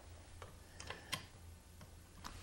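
A few faint metal clicks of a nut driver turning a truss rod nut onto the rod's freshly cut threads.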